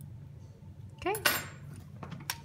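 A small metal hand tool clinks and clatters once against the work table about a second in, over a low steady hum.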